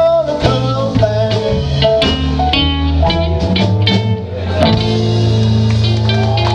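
A live country band playing an instrumental passage with guitars, bass, drums and keyboard. About two-thirds of the way through, a low note is held steady under the guitars.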